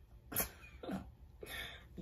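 A person's short, quiet breaths or vocal noises, three in quick succession, the middle one falling in pitch.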